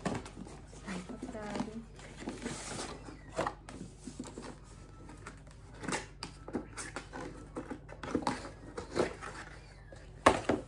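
Paperboard gift boxes being handled and opened, with scattered light taps and scrapes as the lid comes off and the inner box is lifted.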